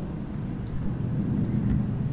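Low, steady rumble of room background noise, with nothing above it but a faint low thump near the end.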